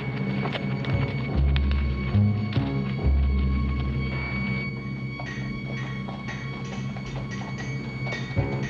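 Orchestral TV-western underscore: long held low notes with struck mallet percussion, settling into a steady tapping beat of about three strikes a second in the second half.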